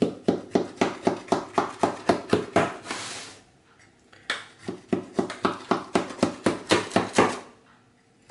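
A knife sawing through a cheesecake's crumbly grated cocoa-shortcrust topping in a baking tin: quick scraping strokes about four a second. They come in two runs, with a pause of about a second between them.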